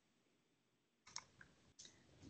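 Near silence, with a few faint clicks about a second in and another near the end.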